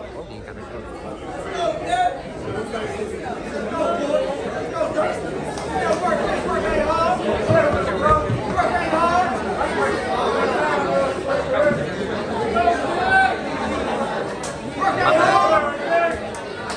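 Indistinct talking and chatter of several people in a large, echoing room, with no words made out; it grows louder near the end.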